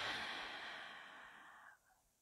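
A woman breathing in slowly and audibly through her open mouth, close to a headset microphone. The breath fades away over about a second and a half.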